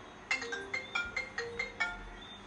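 A phone ringtone playing a quick melody of short, pitched notes, about four a second, beginning a moment in.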